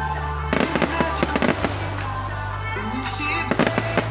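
Fireworks crackling and banging in two rapid clusters of sharp reports, one starting about half a second in and the other near the end, over music playing.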